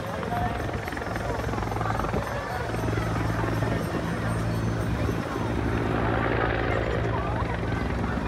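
Helicopter hovering low overhead and then moving off, its rotor and engines making a steady low hum and rumble. The rotor hum grows stronger and more even about three seconds in.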